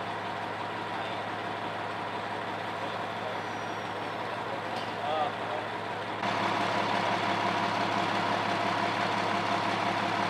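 Fire engine idling with a steady, even hum. The hum gets louder about six seconds in.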